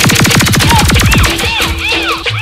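A sound-system DJ effect in electronic music: a rapid train of pulses that slows over about a second, then repeating chirping tones that rise and fall, as a cumbia track starts.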